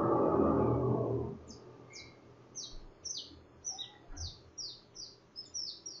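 A brief rushing noise swells and fades over the first second and a half. Then a small bird chirps repeatedly, short high notes that sweep downward, about two a second.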